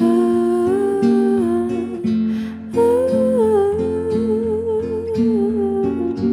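Live acoustic music: a woman's voice sings a long held melody over plucked acoustic guitar. There are two phrases with a short breath between them, and the second phrase wavers with vibrato.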